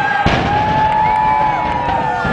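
Controlled demolition of a concrete high-rise heard from across a lake: a sudden deep boom about a quarter second in, then a continuing rumble of the collapse.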